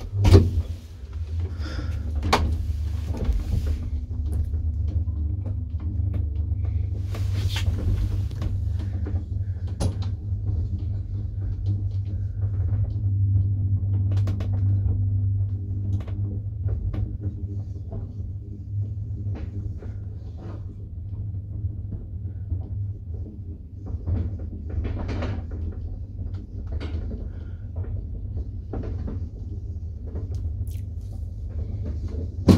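A 1960s traction elevator car travelling: a steady low hum of the ride with scattered clicks and knocks from the cab, after a sharp knock as the car starts just after the floor button is pressed.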